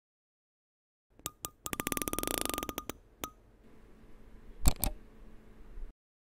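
Edited sound-effect sting for a logo: a few clicks, then a fast rattling run of clicks over a steady high tone, one more click, a low hum, and two heavy thuds near the end, cutting off abruptly.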